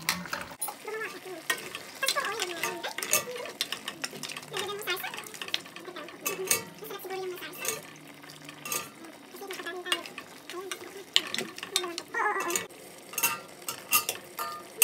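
A metal spoon stirring a thick beef stew in a stainless-steel pot, with irregular clinks and scrapes against the pot throughout and the wet sound of the stew being turned over.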